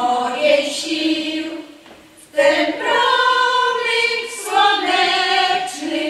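Women's folk choir singing unaccompanied, with a short break between phrases about two seconds in before the voices come back in together.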